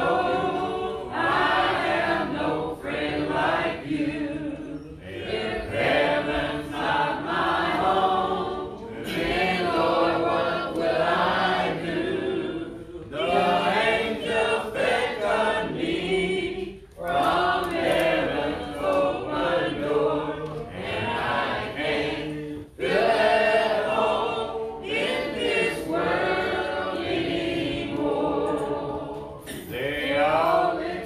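A church congregation singing a hymn a cappella, voices only with no instruments, in phrases several seconds long with short breaks between them.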